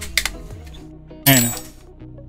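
Plastic case of a monitor's external power adapter being pried apart with a metal tool: sharp clicks, then one loud snap with a brief ring about a second in as the shell's clips let go. Background music plays throughout.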